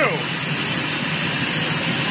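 Helicopter turbine engines running steadily at idle, an even rushing noise with a thin high whine.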